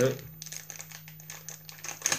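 A small plastic wrapper crinkling in the hands as a sheet of stickers is pulled out of it: a run of light, irregular crackles over a faint steady low hum.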